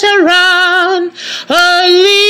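A woman singing alone without accompaniment, holding a note with vibrato. She takes a breath a little past halfway, then slides up into a long held note.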